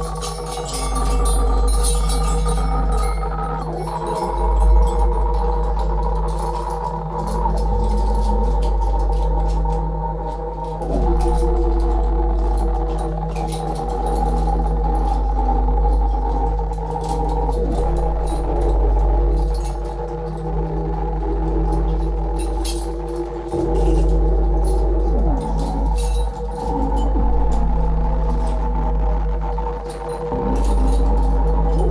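Improvised music of melodica and live electronics: layered reedy chords are held, change every few seconds, and sometimes slide in pitch. A deep steady electronic drone sits beneath them, with scattered small clicks.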